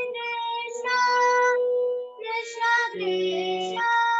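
A girl singing long held notes while playing a harmonium, its reeds sounding steadily under her voice, with a short break for breath about two seconds in.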